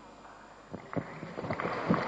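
Quiet hall room tone, then a few scattered claps from about three-quarters of a second in, building into the start of audience applause near the end.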